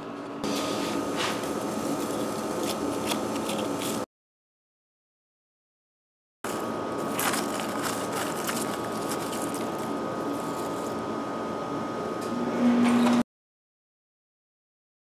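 Gloved hands scraping and crunching through ash and lumps of aluminium dross from melted cans on the floor of a Satanite-lined foundry furnace, with scratchy clicks over a steady background hum. The sound cuts to dead silence for about two seconds around four seconds in, then carries on.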